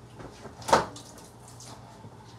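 A kitchen cupboard door knocks shut once, about three quarters of a second in, over a low steady hum.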